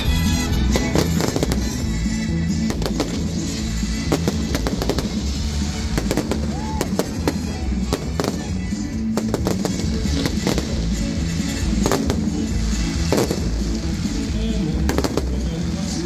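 Fireworks going off: rockets launching and bursting in a rapid, irregular series of bangs and crackles. Loud music with a steady bass plays underneath.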